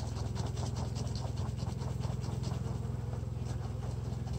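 Mite-wash jar of two plastic bottles joined by a screen, holding bees in windshield washer antifreeze, shaken vigorously by hand: liquid sloshing in a rapid, even rhythm. This is a varroa mite wash, the fluid rinsing mites off the bees so they drop through the screen into the bottom bottle.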